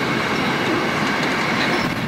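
Passenger coaches rolling past on the adjacent track, wheels rumbling and clicking over the rails with a steady high wheel squeal.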